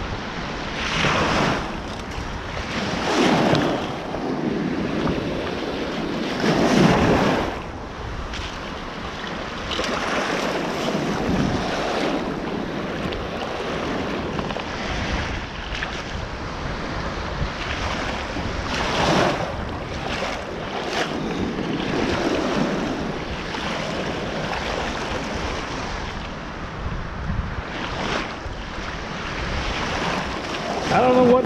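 Small waves washing in over shallow sand, each wash swelling and fading every few seconds, with wind buffeting the microphone throughout.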